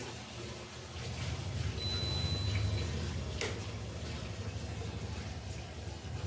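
Whirlpool fully automatic washing machine with a steady low hum under an even hiss, and a single electronic beep about a second long from its control panel about two seconds in, followed by a sharp click. The beep is the kind of alarm the machine gives when it runs without taking in enough water.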